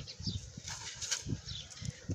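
Faint animal calls: a few short, high chirps falling in pitch, over quiet background.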